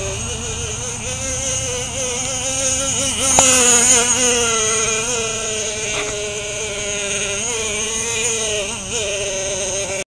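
Traxxas T-Maxx RC truck's small nitro two-stroke glow engine running with a high-pitched whine whose pitch wavers up and down with the throttle, louder and higher for about a second around three and a half seconds in.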